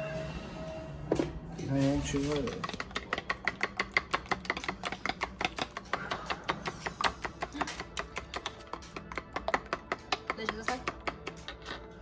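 A fork beating four raw eggs with salt in a bowl, clicking against the bowl in a fast, even rhythm of about five or six strokes a second. The beating starts a couple of seconds in and stops just before the end.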